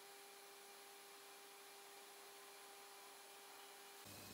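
Near silence: a faint steady hiss with a faint thin hum.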